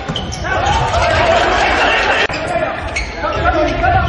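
Indoor volleyball match audio echoing in an arena: the ball being hit during a rally, over loud voices from the stands. The sound cuts abruptly about halfway through.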